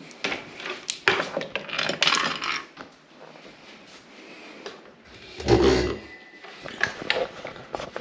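Clinks, clicks and rattles of a small all-metal fan and its cord being handled, with a heavier thump about five and a half seconds in. The fan is not running.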